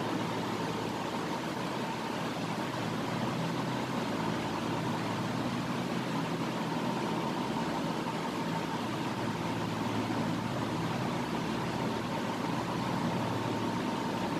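Steady background noise: an even hiss with a low hum and a faint, thin high tone, unchanging throughout.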